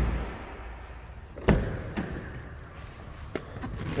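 A car door on a 2018 Nissan Rogue slams shut once, about one and a half seconds in, with a heavy thud, followed by a couple of faint clicks near the end.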